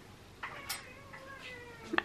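A cat giving a faint, drawn-out meow that starts about half a second in and slowly falls in pitch.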